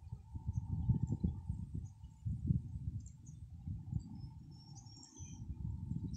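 Wind buffeting the phone's microphone in an irregular low rumble, over a faint steady hum from the field. A few brief, faint high bird chirps come near the end.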